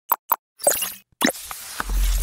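Motion-graphics sound effects for an animated end screen: two quick pops, then a run of louder noisy hits, and a deep rumbling swell with a rushing noise coming in near the end.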